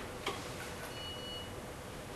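Chalk on a blackboard: one sharp tap about a quarter second in, then faint writing with thin high squeaks about a second in.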